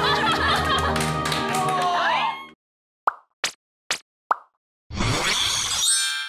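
Edited TV sound: busy music with voices cuts off about two and a half seconds in. Four quick cartoon 'plop' sound effects follow over silence, about half a second apart. Then a short bright jingle plays and stops sharply near the end.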